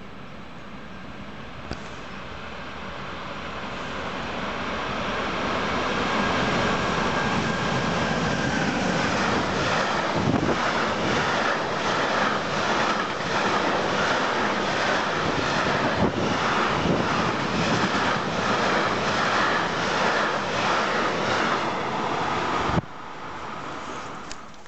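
Container freight train approaching and passing at speed close by: the sound builds for several seconds, then a loud steady rush with the rhythmic clatter of wagon wheels going by, about two beats a second. It cuts off abruptly near the end.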